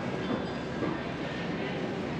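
Steady city street noise: a continuous low rumble with no distinct events.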